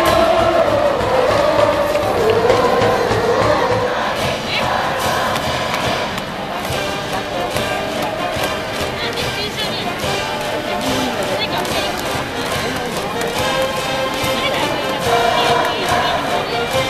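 A baseball cheering section of massed students chanting and singing in unison to a brass band, over general stadium crowd noise. It is loudest in the first few seconds, eases off in the middle, and swells again near the end.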